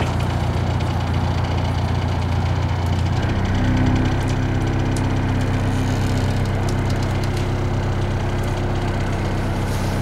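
A narrowboat's diesel engine running steadily, with the boat slipped into gear while held on its centre rope. About three and a half seconds in, the engine's note changes and holds steady again.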